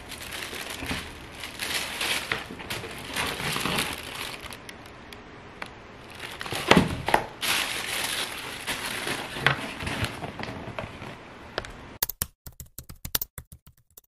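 Tissue paper crinkling and rustling as a pair of sneakers is handled and lifted from a packed shoebox, with a few louder crumples in the middle. Near the end the rustling stops and a quick run of sharp clicks follows.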